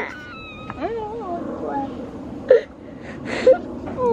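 A young child whimpering and crying softly after a fall, in high, wavering sobs that trail off after about two seconds. A short knock and a brief noisy burst follow near the end.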